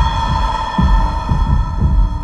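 Suspense soundtrack cue: a held, droning high tone over low heartbeat-like thumps about every half second.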